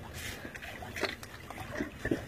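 Faint splashing and trickling of shallow water stirred by hands, with a few small splashes spread through it.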